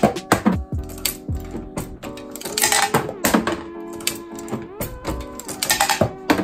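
Background music over repeated sharp metallic clicks and clunks of a multi-station reloading press being worked, its shell plate turning as a bullet is seated and crimped into a brass case.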